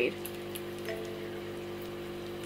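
A steady low hum made of several fixed tones, unchanging throughout, with faint hiss: the room's background drone from running equipment.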